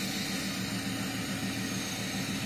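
Box truck's engine idling steadily, with a low, even throb.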